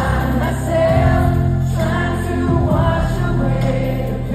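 Live pop ballad performed by a boy band: a male voice singing over sustained keyboard chords and band backing.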